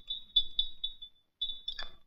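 Teaspoon stirring tea in a china cup, clinking against the sides in quick ringing taps, about four a second. There is a short pause and then two or three more taps.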